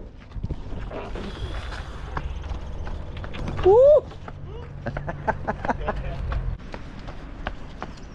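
Footsteps crunching on a gravel car park while walking, with wind rumbling on the microphone until it eases about six and a half seconds in. A single short rising-and-falling vocal call, loud, comes about four seconds in.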